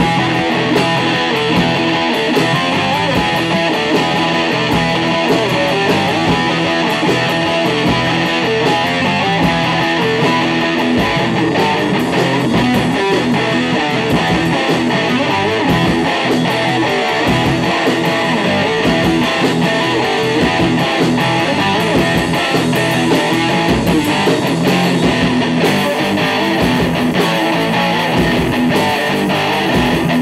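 Live rock band playing loudly and steadily: electric guitar, bass guitar and drums together.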